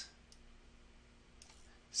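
Near-silent room tone with a couple of faint, short clicks from working the computer, about a third of a second in and again around a second and a half in.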